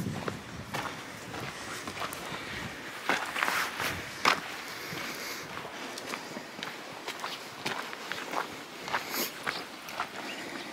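Footsteps on a gravel trail at a walking pace, irregular steps, with one louder step about four seconds in.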